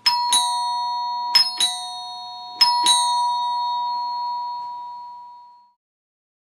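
Byron 9-volt battery door chime sounding three ding-dongs, each a strike on a higher tone then a lower one about a third of a second later, the pairs about a second and a quarter apart. The two tones ring on and fade out shortly before the end.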